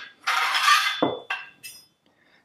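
Steel bolt parts of a Kommando 9mm carbine being handled: a scraping, sliding stretch of metal on metal, then a few light metallic clinks as the parts are set down.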